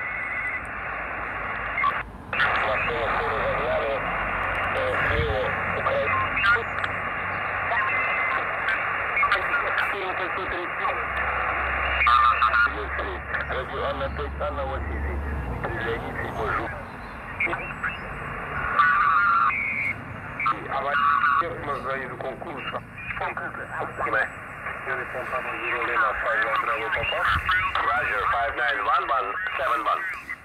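The speaker of a Xiegu X6100 HF transceiver being tuned up the 20-metre band. Static and hiss carry single-sideband voices that come and go, with now and then a brief whistling tone.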